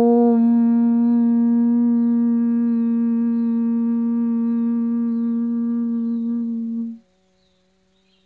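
A woman chanting one long OM on a single steady pitch, held for about seven seconds on one exhaled breath. The upper overtones drop away shortly before the end as it closes into the 'mm' hum, and then it stops abruptly.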